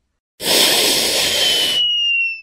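Cartoon whoosh sound effect of a character dashing off screen: a rushing noise about a second and a half long with a whistling tone that slides slightly downward, the whistle trailing on briefly after the rush cuts off.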